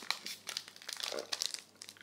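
Foil wrapper of a Pokémon trading card booster pack crinkling as it is torn open by hand, in short irregular rustles.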